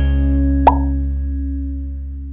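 Final chord of an intro jingle held and fading away, with one short pop sound effect just under a second in.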